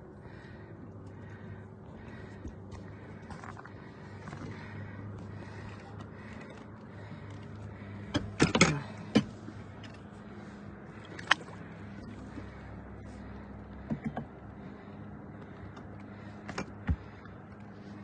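Steady low hum of a boat motor running, with a few short sharp knocks scattered through it, a cluster of them about halfway.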